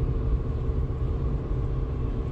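Steady low road and engine rumble of a car being driven, heard from inside the cabin.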